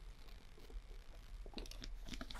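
Faint room tone with a few soft clicks, bunched together about a second and a half in.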